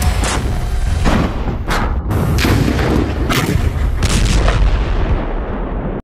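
Combat gunfire and explosions: a string of sharp reports, roughly one or two a second, over a continuous heavy low rumble.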